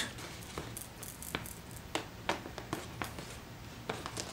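Faint, irregular small clicks and taps of handling as the optical fiber is unwound from the mandrel wrap.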